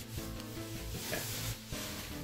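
Cotton pillowcase and bedsheet fabric rustling as a pillow is pushed into the case by hand, under steady background music.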